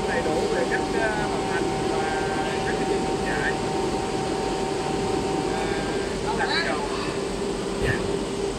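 Steady hum and rush of workshop machinery in a large factory hall, with steady tones in it; the higher tone stops about six seconds in. A voice speaks in short stretches over it.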